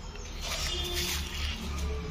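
Faint whimpering of young puppies over outdoor background noise.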